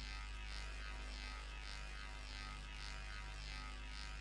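A steady electrical buzz over a deep hum, holding at an even level: an electronic drone in the intro of the music video, before the song starts.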